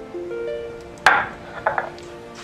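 Background music with soft sustained notes. About a second in, a sharp knock and scrape from a hand grinding stone and its paste against a wooden board, followed by a couple of smaller scrapes near the end.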